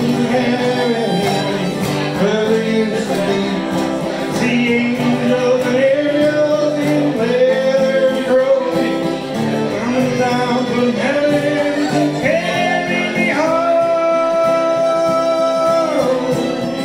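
A man singing a slow folk song, accompanied by strummed acoustic guitar and bowed fiddle, ending on a long held note.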